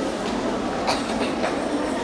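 Steady background din of a large sports hall, with three short knocks close together about halfway through.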